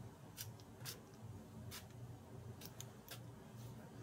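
Perfume spray bottle squirted several times, each spray a short, faint hiss.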